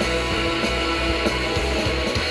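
Shoegaze band playing live: sustained, distorted electric guitars over bass and a steady drum beat, in an instrumental passage with no singing.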